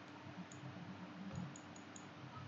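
Computer mouse clicking a few times, light sharp clicks, most of them bunched near the end, over a faint hiss and low hum.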